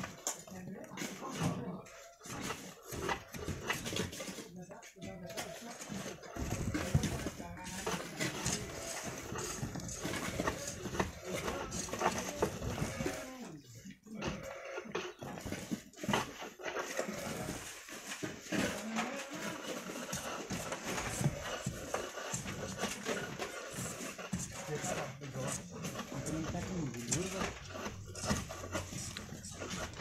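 Voices of several people talking and calling in the background at a work site, too indistinct to make out.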